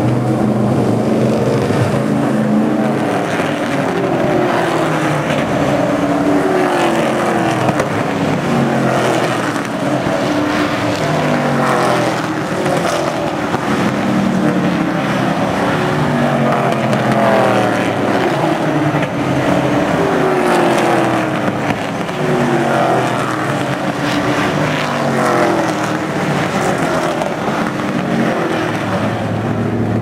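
Several stock cars' V8 engines running at speed around an oval track, the pitch falling again and again as cars go by, over a steady rumble.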